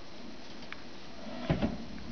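A soft knock with a brief rustle about a second and a half in, over a faint steady hiss.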